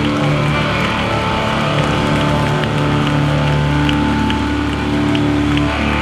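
Live hardcore band's amplified electric guitars and bass holding long, steady ringing notes with distorted hiss, and a few faint ticks.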